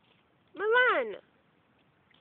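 A toddler's single drawn-out vocal cry, high-pitched, rising and then falling in pitch, about half a second in.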